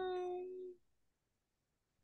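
A person's short held hum, one steady pitch sinking slightly, lasting under a second, then dead silence.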